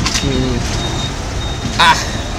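Low, steady rumble of street traffic, with a short spoken "ah" near the end.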